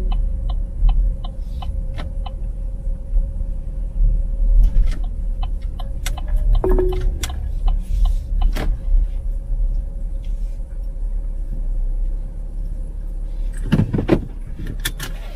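Car moving slowly, heard from inside the cabin: a steady low engine and road rumble with scattered clicks and light knocks.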